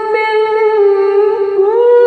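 A single voice singing a slow melody with long held notes that glide up and down, amplified over a hall's sound system; the pitch rises to a higher held note near the end.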